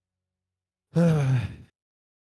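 A man's sigh, a voiced 'ech' that falls in pitch and lasts under a second, starting about a second in after complete silence.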